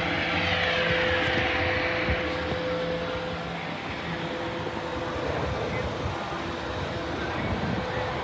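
Steady engine hum, with a whine that falls in pitch over the first three seconds.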